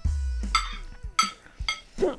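Metal forks clinking against china plates a few times, each clink short and ringing, over a low rumble that fades out about halfway through.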